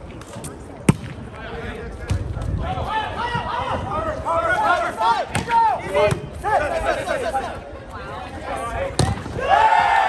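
Volleyball rally: a sharp smack of a hand on the ball about a second in, then players shouting calls over one another, with more slaps on the ball. A long shout rises near the end.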